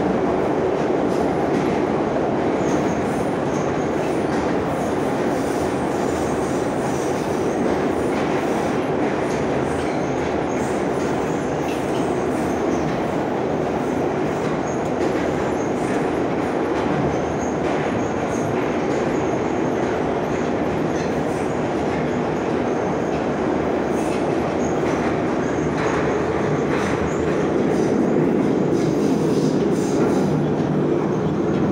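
Inside a moving 81-717.5P metro car running through a tunnel: the steady, loud rumble of the wheels on the rails, growing a little louder near the end.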